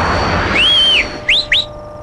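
Rumbling action-scene noise fading out, then a whistle: one held tone that rises and falls back, followed by two quick upward whistles.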